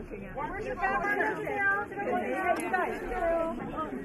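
Several people talking at once in overlapping chatter, with no single voice standing out.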